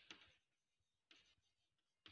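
Chalk writing on a blackboard, faint: short scratching strokes at the start and another brief run about a second in.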